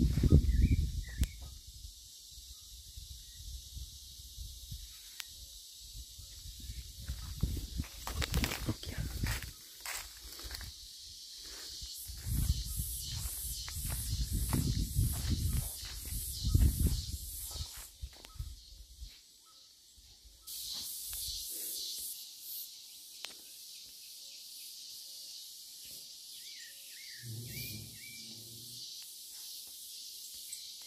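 Outdoor ambience with a few short calls of a sabiá thrush, about a second in and again near the end. A high, pulsing hiss runs through the middle, and a low rumble fills the first two-thirds.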